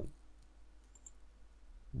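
Near silence with a low steady hum, and one faint computer-mouse click about a second in.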